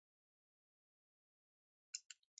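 Near silence, with one faint, short click right at the end.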